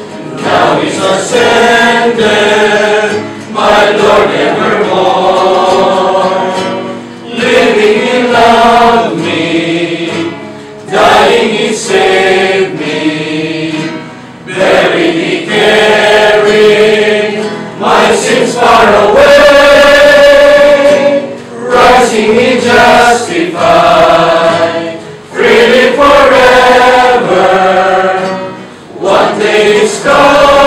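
A group singing a worship song together, with a man's voice leading. The singing comes in held phrases with short breaks between them.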